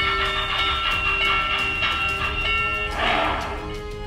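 Model steam locomotive's sound system sounding its whistle: one steady chord of several notes held for about three seconds, followed by a short burst of hiss. Background music plays underneath.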